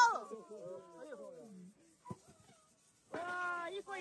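Voices of a small group, laughing and calling out, trailing off over the first two seconds. Then a single click, a short near-silent gap, and a voice again near the end.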